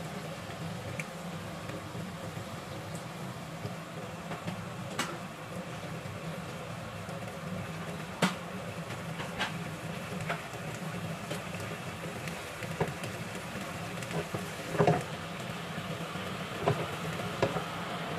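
Cod fish and tomatoes sizzling in sauce in a frying pan: a steady hiss with scattered crackling pops. A few soft knocks near the end as the pan is handled.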